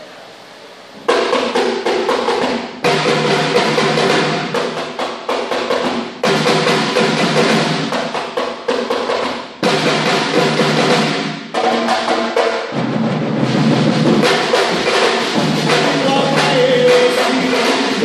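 A Brazilian percussion ensemble plays a groove (levada) together on snare drums, bass drums, a tall hand drum and a drum kit. The drums come in about a second in, and the groove breaks off abruptly and re-enters several times.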